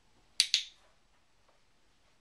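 Dog-training clicker pressed once, giving a sharp double click-clack of press and release a little under half a second in. It marks the puppy for looking at the trainer, the signal that a treat is coming.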